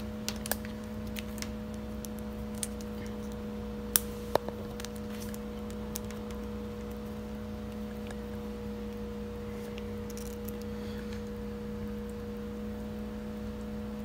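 Steady electrical hum with scattered small clicks and ticks of multimeter probes and a cable connector being handled, the sharpest pair about four seconds in.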